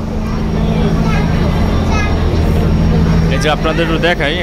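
Steady low drone of a river passenger launch's engine, heard from its lower deck, with passengers' voices faint over it; a man starts talking near the end.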